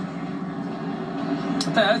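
Steady background hum of a TV race broadcast heard through a television's speaker, in a short gap in the commentary; a man's voice starts near the end.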